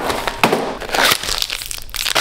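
Cardboard boxes of energy bars handled on a wooden table and a wrapped bar pulled out: crinkling packaging with a few light knocks.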